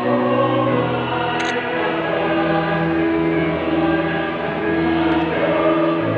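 Church choir singing a slow hymn in long held notes. A brief high chirp sounds about one and a half seconds in.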